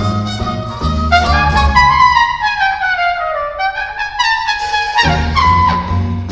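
Trumpet solo with a jazz big band. About two seconds in the band and bass drop out and the trumpet plays alone in a falling run. Near the end the full band comes back in.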